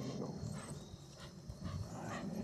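Two leashed dogs setting off alongside a rolling electric unicycle: their footfalls and breathing on wet grass, over a low steady rumble from the moving wheel and wind.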